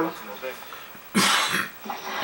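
A single cough, about half a second long, a little over a second in, after a short lull.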